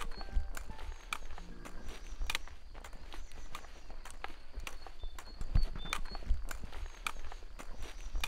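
Footsteps and the taps of trekking poles of a hiker walking a mountain path, an irregular run of sharp clicks and crunches, over a steady low rumble of wind on the microphone.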